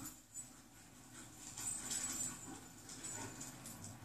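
A dog faintly whimpering and panting, loudest about two seconds in.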